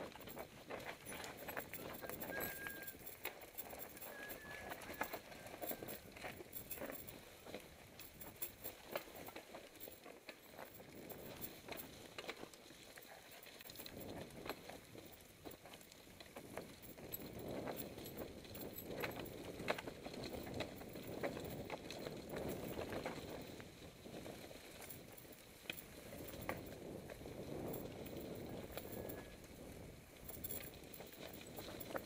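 Mountain bike running down a rough forest singletrack, with tyres rolling over dirt, roots and rocks. The bike rattles and knocks irregularly over the bumps, with a rushing noise that swells and fades with speed.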